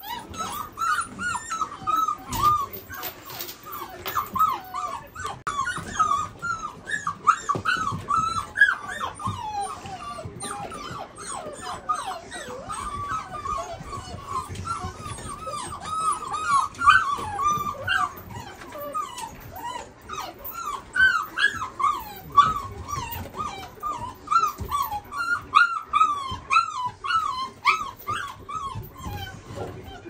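A litter of five-week-old Belgian Malinois puppies whimpering and yipping as they play, many short high cries that rise and fall and overlap, several a second.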